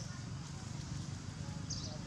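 A baby macaque gives a short, high squeak near the end, over a steady low crackling rustle.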